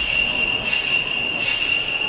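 Small jingle bells ringing steadily, shaken in an even rhythm about every three-quarters of a second.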